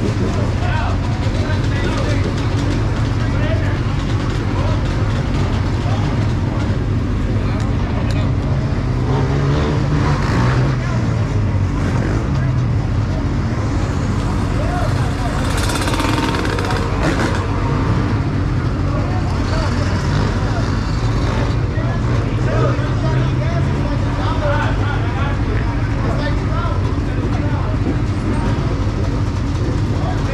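A crowd of dirt bike and ATV engines running together at idle, a steady low drone, with engines revving up and down around ten to twelve seconds in; people talk over it.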